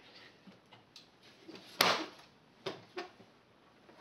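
Knocks from handling a canvas-covered wooden tube caddy case as it is turned around on a bench: one sharp knock a little under two seconds in, the loudest, with a few fainter knocks around it.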